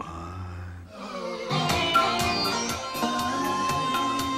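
A low hum for about the first second, then a rock track played back in the mixing studio starts about a second and a half in, its drums keeping a steady beat of about four hits a second.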